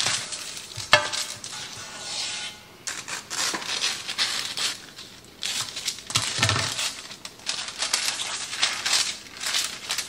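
Parchment paper rustling and crinkling as it is handled and cut with scissors, with irregular scraping and light knocks against a metal cake pan on a stone counter; one sharp knock about a second in.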